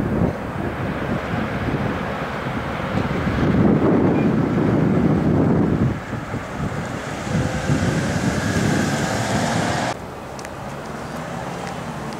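Wind buffeting the microphone over street traffic noise, with a vehicle going by in the second half. The wind noise is loudest a few seconds in and cuts off sharply about ten seconds in.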